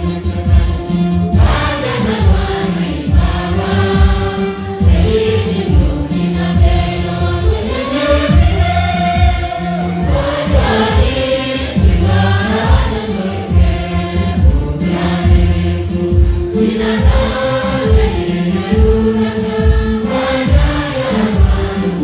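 A church congregation singing a gospel hymn together in many voices, over a steady low accompaniment with a regular beat.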